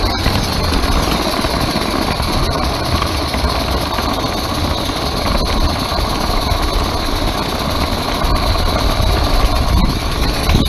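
Steady rumble and rattle of a live-steam garden railway train running, heard from a camera riding on one of its wagons: wheels rolling on the track with a steady hiss above.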